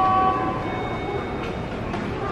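Railway noise on a station platform: a steady rumble with held high-pitched tones whose pitch changes about half a second in.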